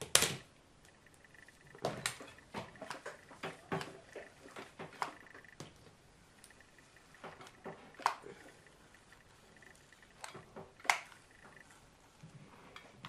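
Irregular soft clicks and rustles of a comb and a Philips ceramic-plate flat iron being worked through hair, with sharper clicks right at the start and about eleven seconds in.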